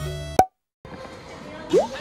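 Background music stops with a click, followed by a moment of dead silence at an edit cut. Then comes a faint hiss of room ambience, and near the end a short, rising pop sound effect.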